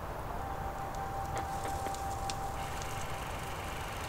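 Steady low background rumble of distant traffic outdoors, with a faint thin steady tone through most of it and a few faint ticks.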